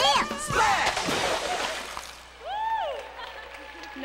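A stage song ends on a final sung cry, followed by about a second and a half of dense noise that fades away. Then comes a single voice exclamation, rising and falling in pitch.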